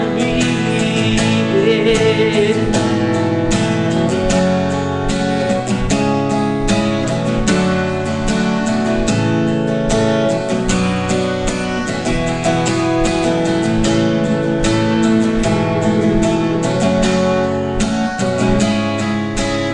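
Capoed steel-string acoustic guitar strummed steadily in a driving rhythm, ringing full chords that change every couple of seconds.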